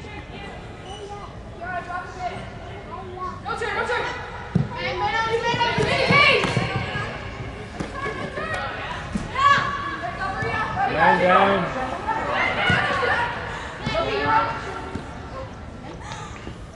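Girls' and other voices shouting and calling across an indoor soccer field, the calls overlapping and echoing in the large hall, loudest through the middle of the stretch. A few thuds of a soccer ball being kicked on the turf cut through the shouting.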